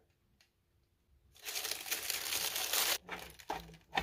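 Plastic wrapping crinkling as it is handled, a dense burst of about a second and a half starting about a second and a half in, followed by a few light handling knocks.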